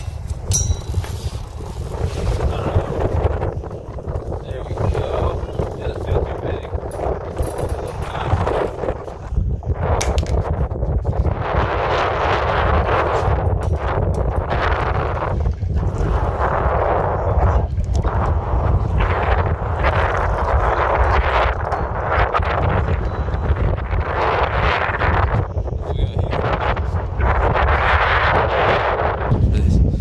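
Strong wind buffeting the microphone: a constant low rumble with gusts that swell and fade every second or two.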